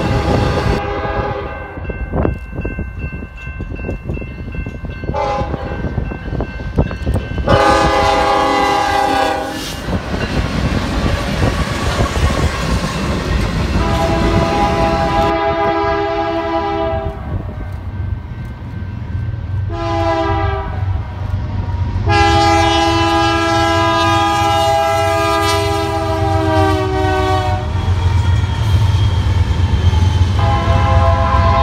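Diesel freight locomotive's multi-chime air horn blowing the grade-crossing signal, long, long, short, long, with each blast sounding several notes at once. The long final blast runs over the rising low rumble of the locomotive passing close by.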